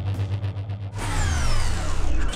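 Evinrude E-TEC G2 250 outboard, a two-stroke direct-injection V6, running at speed with a steady low drone. About a second in, a whoosh sweeps down from high pitch.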